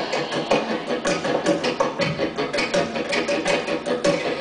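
Live instrumental passage from piano and accompanying band, with no vocals, driven by a fast, even run of short repeated notes, about five a second.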